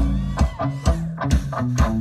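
Live rock band vamping a steady groove: electric guitar and bass guitar over a drum beat at about two hits a second.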